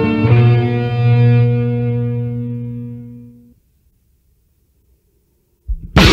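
Death/thrash metal recording: a guitar chord is struck about a third of a second in and left to ring, dying away over some three seconds. About two seconds of near silence follow, then a short hit just before the end as the full band comes back in.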